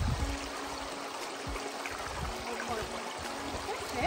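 Shallow rocky stream running steadily over stones, a constant rushing trickle.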